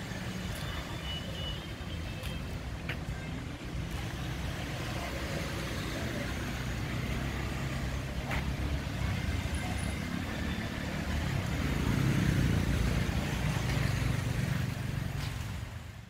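Motor traffic on the beach road: a low engine rumble that swells, loudest about twelve seconds in as a vehicle passes, then fades away at the very end.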